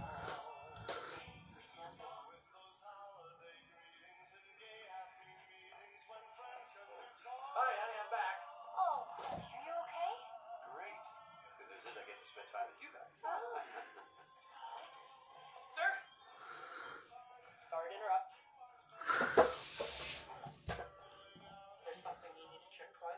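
Film soundtrack: background music under dialogue, with a loud noisy burst lasting about a second and a half near the end.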